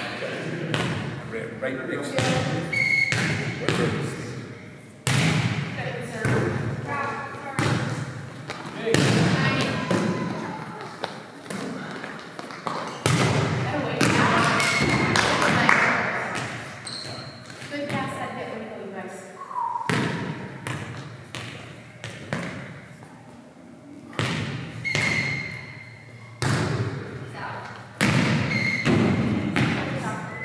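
Volleyball being hit and thudding on a hard gym floor, with many sharp knocks through the rally. Players' voices and calls run between the knocks, echoing in the large hall.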